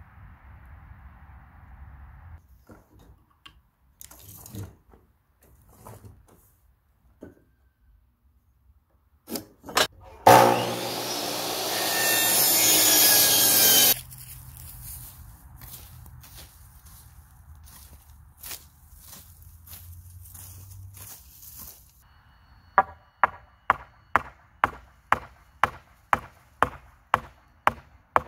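A power saw cuts through a wooden board for about four seconds, getting louder as the cut goes on. Around it are scattered knocks and scrapes of lumber and tools. Near the end comes a run of about a dozen sharp, even knocks, roughly two a second.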